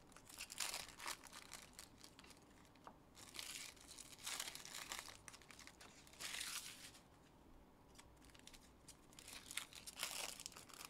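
Foil wrappers of Panini Optic football card packs being torn open and crinkled by hand, in several short bursts.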